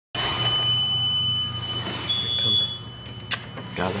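Elevator signal chime ringing: one long high ringing tone, then a shorter, slightly higher tone. A sharp click follows near the end, over a low steady hum.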